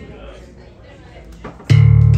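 A funk trio of electric guitar, keyboard and drums starting a tune: after a quiet moment, a loud low chord hits near the end, with electric guitar and keyboard bass.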